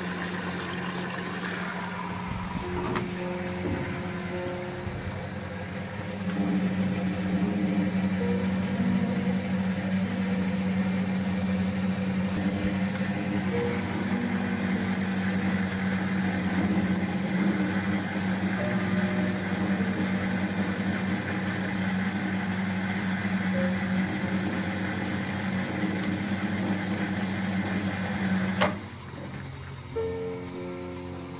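1980 Philco W35A washing machine running with a steady electric hum, water flowing, that gets louder about six seconds in and stops with a click near the end.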